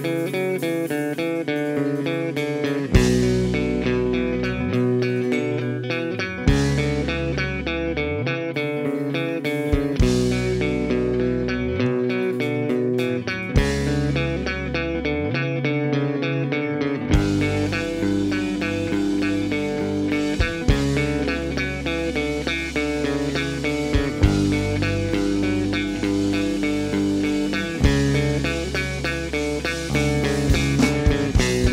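Live instrumental rock trio of electric guitar, bass guitar and drum kit playing: the electric guitar repeats a riff while bass notes and cymbal crashes land together about every three and a half seconds. About seventeen seconds in the drums come in fully with steady cymbals and the band plays on.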